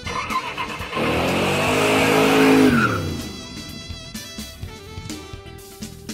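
A car sound effect: an engine-like rush with hiss that swells about a second in and drops in pitch as it fades near the three-second mark, over background music.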